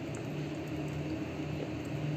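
Quiet room tone with a steady low hum; no distinct mixing strokes are heard.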